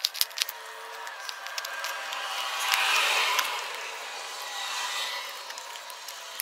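Plastic jar handled and turned in the hands, with a few sharp clicks at first. Then a scraping, rubbing noise swells to its loudest about halfway through, eases off, and rises briefly again.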